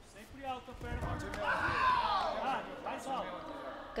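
A long shout that rises and falls in pitch, about a second and a half in, over a few dull low thuds.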